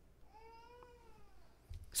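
A faint, single high-pitched call, about a second long, rising and then falling in pitch.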